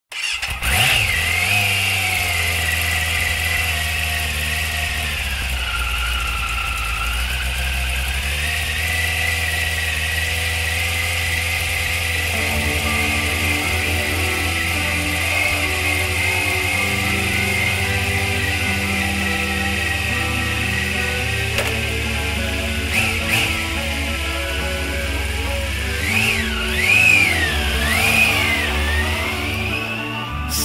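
Motorcycle engine starting and running with a steady low rumble, revved up and down a few times near the end. A music intro comes in underneath about twelve seconds in.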